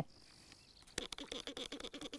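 Plastic trigger spray bottle being picked up and handled: a quick, irregular run of faint clicks and rustles starting about a second in.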